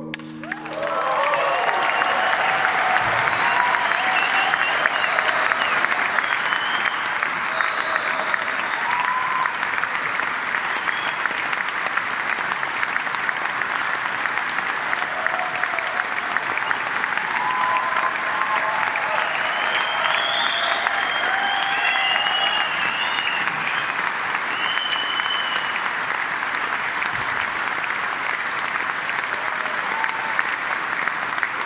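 A large concert audience applauding and cheering, with scattered shouts above the clapping. The applause breaks out within the first second as the last sung note and acoustic guitar die away.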